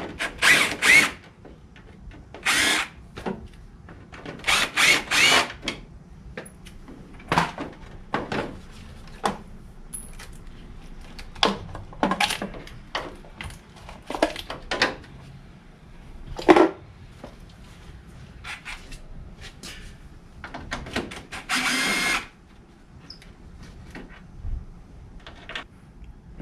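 Cordless drill-driver run in about ten short bursts, each spinning up and stopping, as it backs out the fasteners holding the lower front lamps of a 1995–2000 Chevy Tahoe. A few light clicks and knocks come between the bursts.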